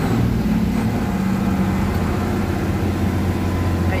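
Inside a Mercedes-Benz 1218 truck's cab: the diesel engine runs steadily as the truck drives slowly, under an even hiss of heavy rain and tyres on a waterlogged road.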